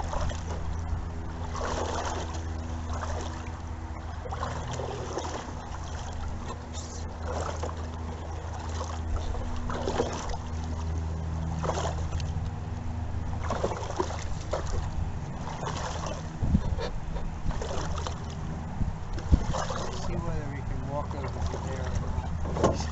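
Wooden canoe paddles dipping and pulling through river water in a steady rhythm, a stroke about every two seconds, over a steady low hum.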